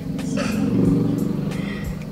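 A motor vehicle's engine hum, heard from inside a stopped car, swelling to its loudest about a second in and then fading.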